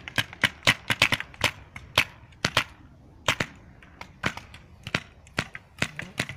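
Paintball markers firing in a game: many sharp pops at an irregular pace, some in quick strings of two or three shots.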